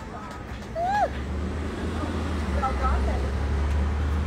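Low, steady engine rumble of a road vehicle in the street. It starts about a second in and grows louder, under crowd chatter and a short rising-and-falling call.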